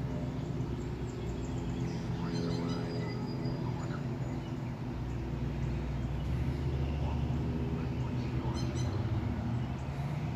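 A steady low hum of several low tones, like a motor running, with faint bird chirps about two seconds in and again near the end.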